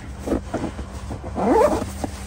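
A dog whining: a few soft sounds, then one short rising whine about a second and a half in, over a steady low hum.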